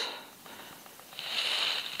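A near-quiet pause between spoken phrases; from about a second in, a faint, steady high-pitched hiss rises until the voice comes back.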